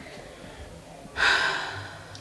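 A person's loud, sharp breath about a second in, starting suddenly and fading away within under a second.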